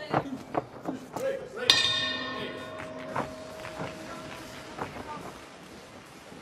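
Ring bell struck once about two seconds in, ringing on with a bright metallic tone that dies away over a few seconds: the bell ending the round.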